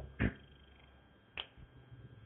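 Two short, sharp clicks about a second apart, the first louder, over a faint low room hum.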